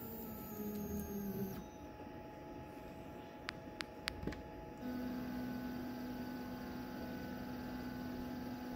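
Onefinity CNC's Z-axis stepper motor jogging the router bit down toward the probe block: a steady motor hum for about a second and a half, then a few light clicks, then a second, longer steady run from about five seconds in.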